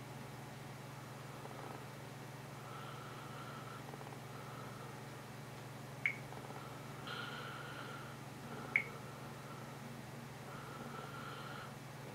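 Faint steady low hum, with two short, sharp clicks about six and nine seconds in, from fingers tapping a Samsung Galaxy S phone's touchscreen.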